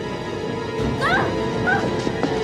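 Tense horror film score holding a steady drone, with two short, high, rising cries about a second in and again shortly after.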